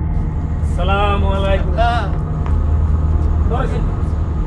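A few short spoken exclamations by a man, about a second, two seconds and near four seconds in, over a steady low hum.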